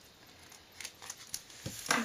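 Scissors snipping through a clear plastic card-pocket page, cutting off the strip with the binder holes: a few short, sharp snips in the second half.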